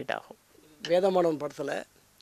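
A man's voice: a short sound at the start, then a wordless voiced sound of about a second whose pitch bends smoothly, starting about a second in.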